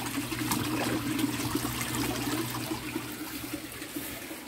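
Water trickling and splashing in a tilapia tank, over a steady low hum from the tank's water system.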